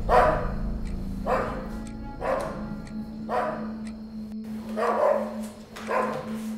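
A dog barking about once a second, over a steady, low, held music note.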